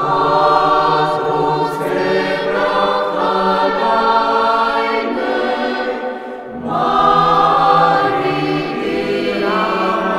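Mixed church choir of men's and women's voices singing held chords in parts, with a brief breath between phrases about six and a half seconds in.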